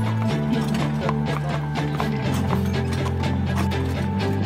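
Background music with sustained chords, over the regular clip-clop of a pair of Lipizzaner horses' hooves as they pull a carriage.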